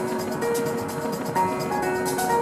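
Melodic techno DJ mix: held synth melody notes stepping between pitches over a fast, even high hi-hat pattern, with little deep bass.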